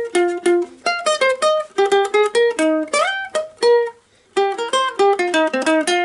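Ukulele picked fingerstyle, a quick melody of single plucked notes, with one upward slide about halfway through and a brief pause about four seconds in.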